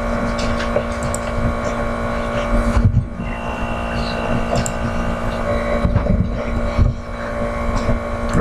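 Steady electrical-sounding hum over an uneven low rumble, like fan or microphone background noise, with a few faint ticks.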